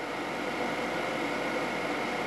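Steady whir of a solar air-heating system's blowers, a large in-line fan and smaller DC fans, running continuously with a faint constant tone in it.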